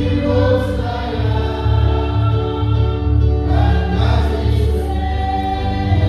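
Congregation singing a hymn together in long held notes, over a steady low beat about twice a second.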